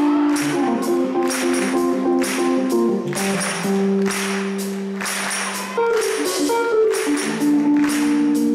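A live soul band playing an instrumental passage: sustained keyboard chords from a Nord Electro 3 over a steady beat of drum and cymbal hits about twice a second. The chords change about three seconds in and again near six seconds.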